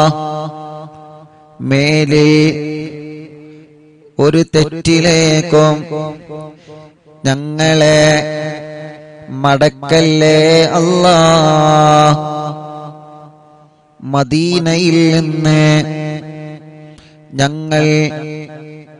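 A man's voice chanting a supplication in slow, melodic phrases with long held notes and short pauses between them, with some echo.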